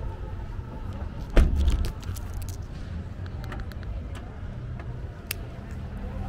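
A car door shutting with one heavy thump about a second and a half in, followed by small clicks and jangles like keys, over a steady low rumble of street traffic.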